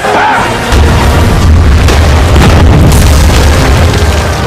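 Deep, loud explosion boom with a long low rumble, setting in under a second in and holding, over music.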